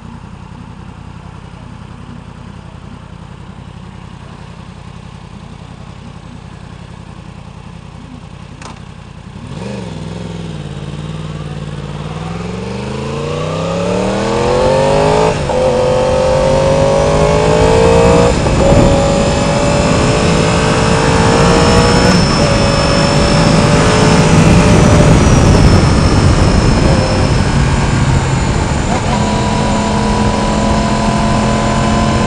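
2016 Yamaha R1's crossplane inline-four idling steadily for about nine seconds, then pulling away hard, its note rising in pitch through the gears with upshifts every three to four seconds. Wind rush builds with speed.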